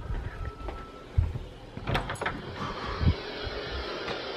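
Wooden interior door being opened by hand: a sharp click of the latch about two seconds in, among low bumps of footsteps and handling.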